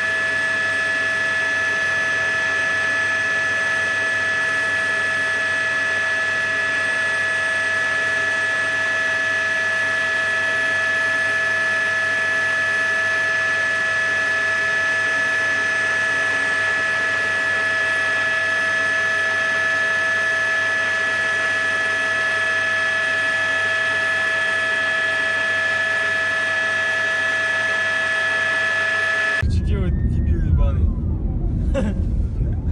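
Helicopter turbine engine whine over a steady hiss, with several fixed high pitches that hold unchanged throughout; it cuts off suddenly near the end.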